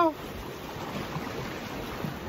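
Steady wash of sea water against coastal rocks, an even rushing noise with no break.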